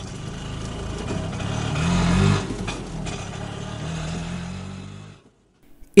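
Auto-rickshaw engine running as the vehicle drives along. It grows louder to about two seconds in, then fades and stops shortly after five seconds.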